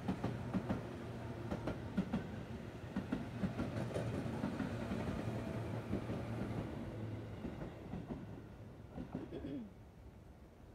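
Electric commuter train passing close by: wheels clicking over the rail joints over a steady low running hum. The sound dies away near the end as the last car goes by.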